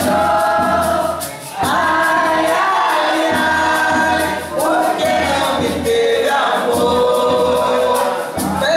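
Live folk song: a woman and two men sing long held notes together over a strummed acoustic guitar, a steadily beaten double-headed drum and a quick, even shaker. The voices break off briefly about a second and a half in and again near five seconds.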